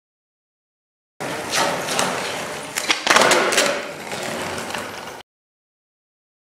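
Skateboard rolling on pavement with several sharp clacks of the board hitting the ground, as in a trick's pop and landing, loudest about three seconds in. The sound starts abruptly about a second in and cuts off suddenly near the end.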